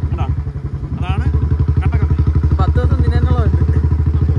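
Motorcycle engine running at a slow riding pace, a steady low pulsing exhaust note that dips briefly about half a second in and then picks up again.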